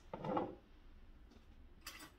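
A glass mug set down on a kitchen countertop with a soft knock, then a single sharp clink of dishes in a drying rack near the end.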